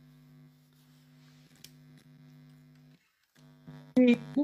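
Faint steady electrical hum, a low drone with a few overtones, which drops out for a moment about three seconds in.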